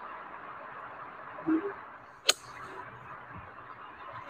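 A golf club striking a ball once, a sharp crack a little past two seconds in, over a steady background hiss. Shortly before the strike comes a brief low sound.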